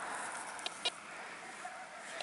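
Faint outdoor background with two small, light clicks just under a second in, during handling of a small soil-covered copper coin.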